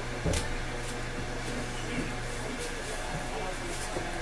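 Steady low hum of an electric potter's wheel spinning while wet clay is worked by hand, with one short knock about a quarter second in.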